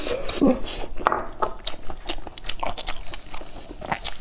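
Close-miked chewing of soft braised meat: wet smacking and small crackling clicks of a mouth eating, with a short hum about half a second in.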